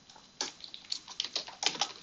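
Computer keyboard typing: an irregular run of key clicks starting about half a second in.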